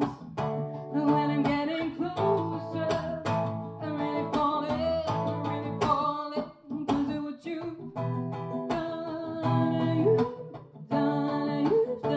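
A woman singing while strumming her own acoustic guitar.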